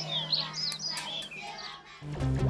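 Birds chirping in short, quick, high whistled notes that rise and fall, over a single low musical note held steady.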